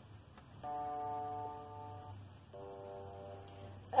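Soft instrumental accompaniment playing two held chords, the first coming in about half a second in and the second about two and a half seconds in, with a faint click near the start.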